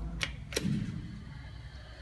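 Elevator hall call button being pressed: two sharp clicks close together, over a low steady hum.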